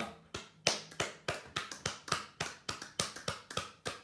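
An elderly man with Parkinson's disease clapping his hands in a steady rhythm, about three to four claps a second, after a spoken "Clap."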